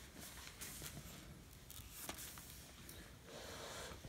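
Quiet kitchen room tone with a few faint, sharp clicks, and a soft rustle of the phone being handled near the end.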